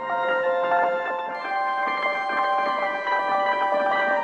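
A granular synth pad made from a piano sample, playing sustained chords with a long release. A chord comes in at the start and another about a second and a half in, the notes held and overlapping.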